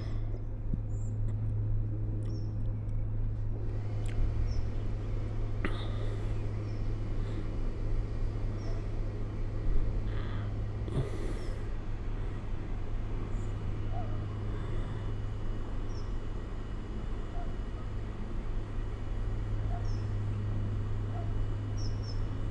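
Outdoor background ambience: a steady low hum with faint, short high chirps every second or two and a few faint clicks.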